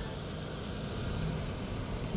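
A car rolling slowly up a driveway: a steady noise of tyres and a quiet engine that grows slightly louder.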